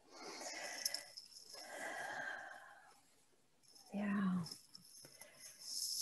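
A person's audible breathing close to the microphone: two long breaths in the first three seconds and another near the end, with a short hummed 'mm' about four seconds in.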